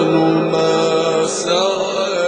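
A male Quran reciter's voice holding one long melodic note in the ornamented mujawwad style, slowly fading toward the end.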